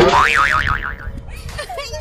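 A cartoon "boing" sound effect: a wobbling tone that swings up and down four or five times in under a second, then fades, with voices following near the end.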